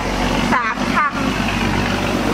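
A motor vehicle engine running nearby, a steady low rumble under a woman's voice.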